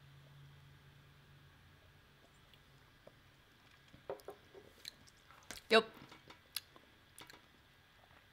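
Quiet mouth sounds of people tasting a sip of bourbon: small wet clicks and lip smacks scattered through the second half.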